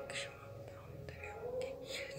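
A person's quiet, whispery voice, over a faint steady tone that bends upward near the end.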